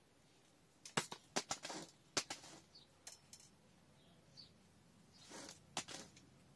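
Hands working potting mix in a plastic flower pot: a quick run of sharp taps and knocks about a second in, as the soil is firmed and the pot handled, then a brief rustle and one more knock near the end.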